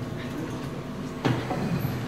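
Rumbling and a knock from people moving around a table microphone: a steady low rumble with one sharp bump a little after halfway, followed by rustling.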